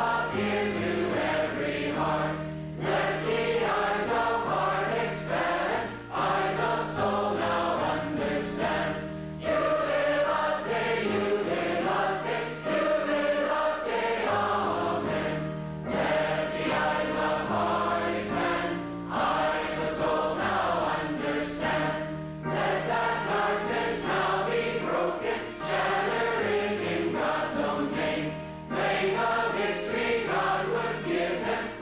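A congregation singing a hymn of jubilation together as a choir, with a woman's voice leading at the microphone. The singing is continuous, with held notes.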